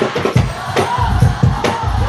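Sholawat music from a hadrah group: hand-struck frame drums (rebana) beating a quick, steady rhythm, with only a short sung note about halfway through.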